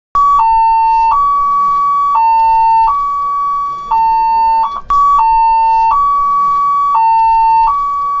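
Ambulance siren sounding a loud two-tone hi-lo call, switching between a higher and a lower note that are each held for under a second. There is a brief break a little before five seconds in, after which the pattern starts again.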